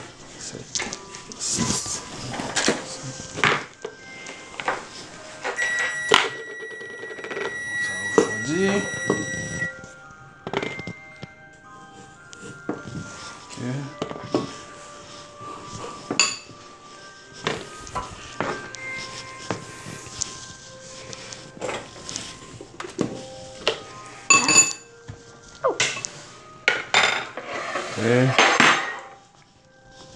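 Dishes and utensils clattering as bowls, forks and a saucepan are handled and set down on a kitchen counter, with many short clinks and knocks.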